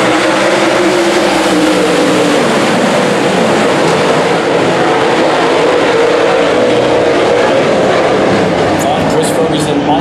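A field of dirt late model race cars with their V8 engines running together as they circle the track toward the start, a loud, steady engine drone whose pitch wanders slightly.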